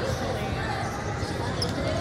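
Basketballs bouncing on a hardwood court with indistinct voices, all echoing in a large hall; a steady, busy jumble with no single loud event.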